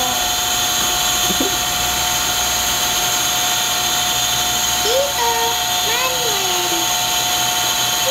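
A loud, steady mechanical drone with several steady whining tones. Over it come a few short, soft cooing voice sounds: one about a second in, and two more around the middle, rising and then falling in pitch.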